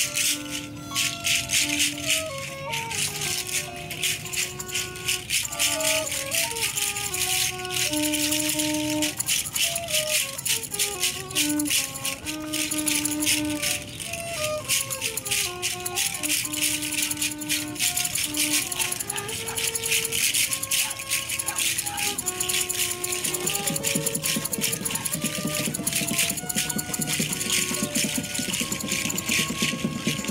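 Hand rattles shaken continuously in an improvised group piece, over a melody of single held notes stepping up and down. A lower, rougher layer joins about two-thirds of the way through.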